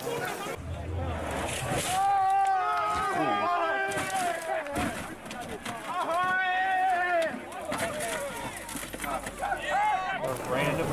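Rally spectators calling out in raised voices, with outdoor background noise.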